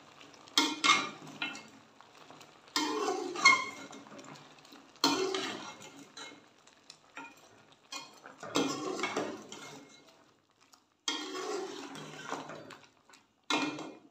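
A slotted spoon stirring and scraping through chicken pieces in a metal pot, mixing in freshly added spices, in about six separate strokes of a second or two each with short pauses between.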